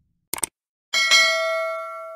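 Sound effect of a subscribe-button animation: a quick double mouse click, then about a second in a bright notification-bell ding with several clear overtones that rings on and slowly fades.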